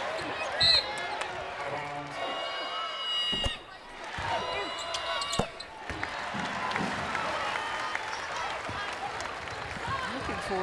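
Court sound of a live basketball game in an arena: a basketball bouncing on the hardwood with short high-pitched squeaks and voices calling out over the crowd. Two sharp knocks come near the middle.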